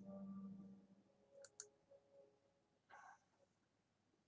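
Near silence, with a short low hum at the start, two faint sharp clicks about a second and a half in, and a brief soft rustle near the three-second mark.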